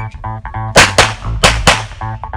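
Four pistol shots in two quick pairs, the first pair just before a second in and the second pair about half a second later. They are heard over background music with a steady bass beat and guitar.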